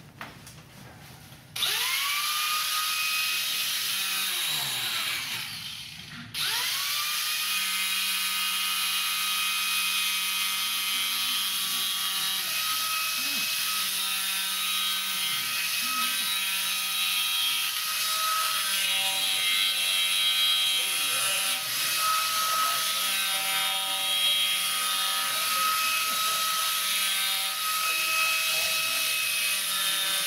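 Heavy hand-held electric power carving tool switched on: its motor spins up about two seconds in, winds down and stops around six seconds, then starts again and runs steadily, its pitch wavering slightly.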